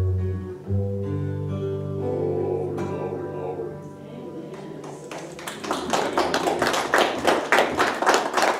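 Acoustic guitar playing the song's last chords, which ring out and fade. From about five seconds in, a small audience claps.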